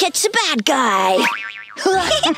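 A cartoon character's voice making wordless, sing-song sounds, then about one and a half seconds in a short wobbling boing sound effect.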